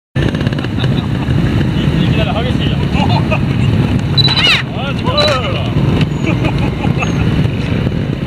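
A child's high-pitched voice calling out twice, about four and five seconds in, over a steady low rumble.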